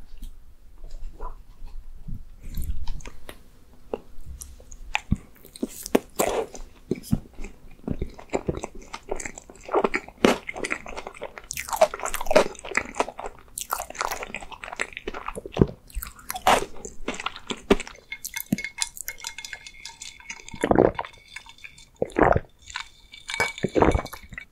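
Close-miked chewing, biting and wet mouth sounds of someone eating ice cream cake, with a wooden spoon scraping cake across a wooden board at the start. Near the end, ice clinks in a glass of iced coffee.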